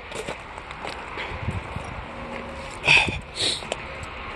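Footsteps on gravel as someone walks, with faint scuffs and one short, louder sound about three seconds in.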